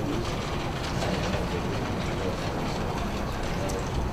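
Indistinct murmur of people talking in a meeting room over a steady low rumble.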